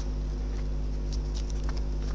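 A steady low electrical hum, with a few faint, brief rustles of paper being handled about a second in and near the end.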